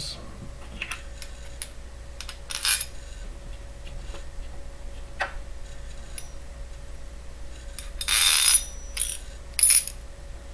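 Steel washers and nuts clinking against a threaded steel rod as they are slid and turned onto it by hand: scattered light clicks, with the loudest jingling clinks about eight seconds in and again near the end. A faint steady hum runs underneath.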